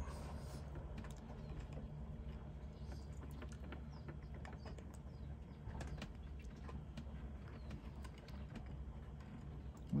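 Faint scattered clicks of needle-nose pliers gripping and prying open the crimped barrel of an MC4 connector pin, over a low steady hum.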